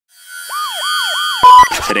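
Intro sting for a news segment: a yelping emergency-siren sound effect, three quick rise-and-fall wails, over sustained synth tones. It ends in a loud hit and a short glitchy burst about one and a half seconds in.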